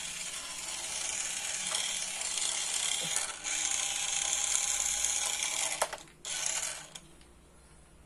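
Battery-powered toy car's motor and gears whirring as its wheels spin freely in the air, with short breaks about three and six seconds in, stopping about seven seconds in.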